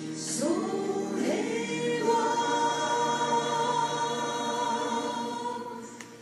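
A woman singing a slow Japanese song to her own electronic keyboard accompaniment, with a breath near the start, then a rising phrase into one long held note that fades just before the end.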